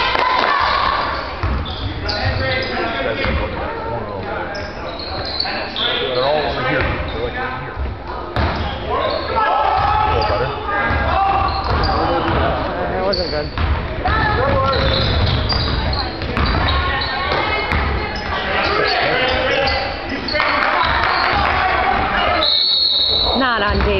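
Live basketball game in a gymnasium: a basketball dribbled on the hardwood court, with spectators' voices and calls carrying through the hall.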